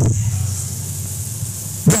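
A steady low sustained note, the kind a church organ or keyboard holds under preaching, with a word of speech cutting in near the end.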